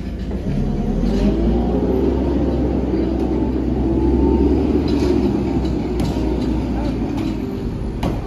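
A heavy engine running with a steady low rumble, loudest around the middle, with voices faintly underneath.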